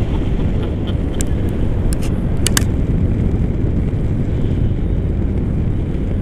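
Wind rushing over the camera microphone in paraglider flight: a loud, steady low rumble with no engine note, with a few clicks between one and three seconds in.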